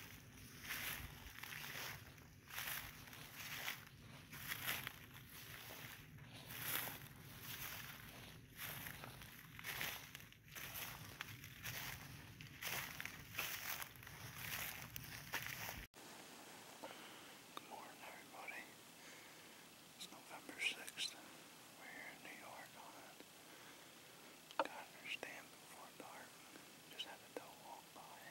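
Footsteps crunching through frost-covered grass at a steady walking pace, about one step a second. Near the middle they stop abruptly, leaving a quiet background with scattered faint clicks and small rustles.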